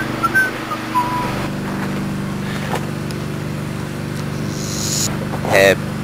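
Steady low hum of an idling engine, with brief voices near the end.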